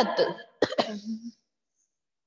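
The tail of a woman's spoken word, then about half a second in a short throat clearing: a sharp catch followed by a brief voiced rasp.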